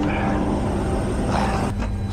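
Steady low hum of a powered-up Bombardier Global 7500's running systems, with a single sharp click near the end.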